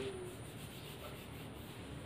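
Faint, steady rubbing of fingers sliding along a thin bamboo kite spine that has been shaved smooth with a cutter.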